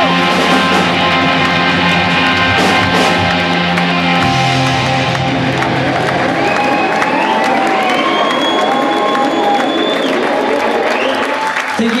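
Live rock band with electric guitars playing the close of a song. The low notes drop out about four seconds in while the guitars ring on, with crowd cheering rising over the last notes.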